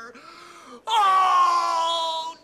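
A long, loud, drawn-out vocal wail that starts a little under a second in and is held for over a second, sliding slightly down in pitch; softer breathy sounds come before it.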